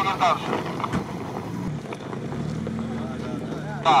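Jeep Wrangler Rubicon engine running at a steady low drone as it creeps down an icy slope, the drone coming up about two seconds in; an onlooker guesses the hill-descent assist is switched on.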